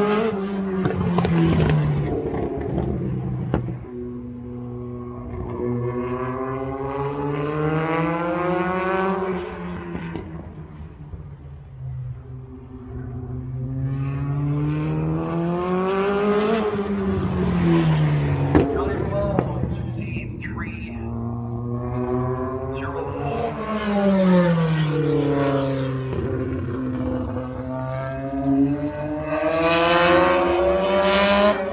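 A single stock car's engine running laps of a short oval on its own. The engine note climbs and falls again roughly every eight seconds as the car accelerates down each straight, comes past and lifts for the turns.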